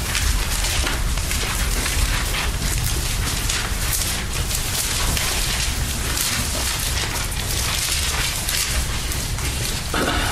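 Bible pages rustling and being turned as a group looks up a passage: a steady, crackly rustle over a low rumble.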